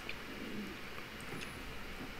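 Quiet room background: a faint, steady low hiss with no distinct events.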